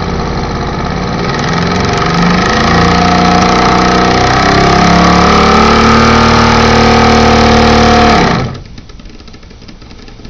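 Mamod toy steam engine running fast, a steady buzzing chuff whose pitch steps upward as it speeds up. About eight seconds in the sound falls away sharply to a much quieter level.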